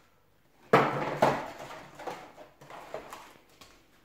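Cardboard packaging box being handled and set down: two sharp knocks about a second in, then lighter taps and rustling of the box and lid.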